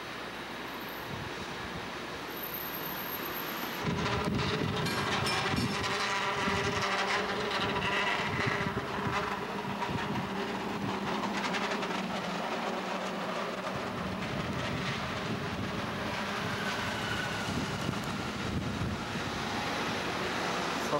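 A San Francisco cable car passing close, clattering and rattling on its rails over a steady hum. The sound comes in suddenly about four seconds in and eases off toward the end.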